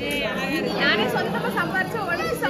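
Speech: several young women chatting with each other.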